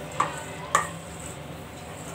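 A metal spoon stirring and scraping a crumbly ground sesame, peanut and jaggery mixture in a stainless steel bowl. The spoon strikes the bowl twice in the first second, each strike a short ringing clink.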